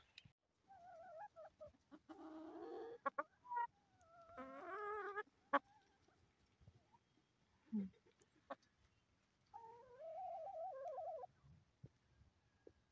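Backyard hens, mostly Barred Rocks, giving several drawn-out, wavering calls about a second long, with a few short sharp clicks between them.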